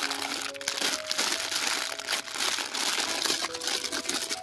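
Clear plastic bag crinkling in the hands as a toy tractor wrapped in it is lifted out of its cardboard box, a continuous crackle throughout. Background music with held notes plays underneath.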